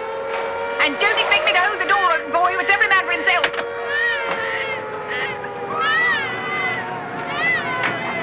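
Air-raid siren sounding a steady, slowly sinking tone under shouting voices. In the second half come three short, high rising-and-falling cries.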